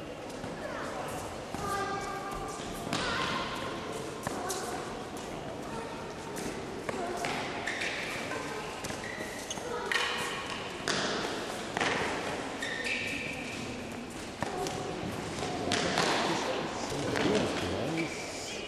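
Tennis rally: racket strikes on the ball and the ball bouncing on the court, sharp knocks every second or two, with people talking in the background.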